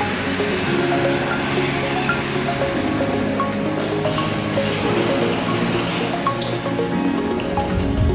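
Background music: held chords with short high notes over them.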